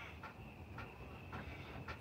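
A quiet drag on a cigarette: a faint breath drawn in through the cigarette, with a few soft ticks and a thin steady high tone in the background.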